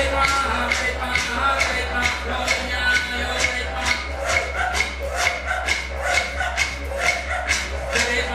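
Recorded traditional Aboriginal song played over the stage speakers: a man singing over a brisk, even beat of sharp clicks.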